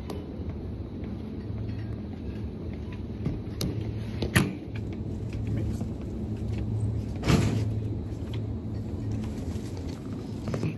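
Metal shopping trolley rolling and rattling across a hard floor, a steady rumble with a low hum under it. Two sharp knocks stand out, a little over four seconds in and again about seven seconds in.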